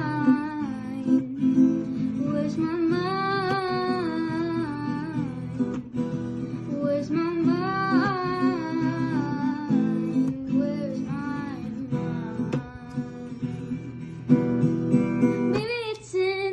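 A woman singing to her own strummed small-bodied acoustic guitar, the guitar running steadily under sung phrases with short breaks between the lines.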